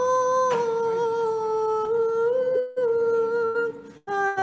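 A woman's voice chanting a slow liturgical hymn in long held notes, with a short break for breath in the middle and another near the end.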